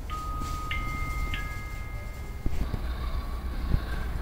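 A chime rings three notes about half a second apart, low, then high, then middle. The notes hold and overlap, then cut off together about two and a half seconds in. After that come a couple of low knocks over steady background noise.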